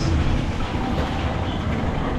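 Small Ferris wheel spinning fast: a steady rattling rumble from its metal gondola and frame.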